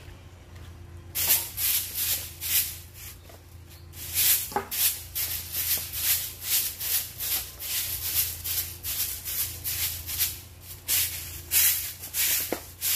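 A broom sweeping a concrete path in brisk scratchy strokes, about two a second. The strokes start about a second in, pause briefly, then keep a steady rhythm.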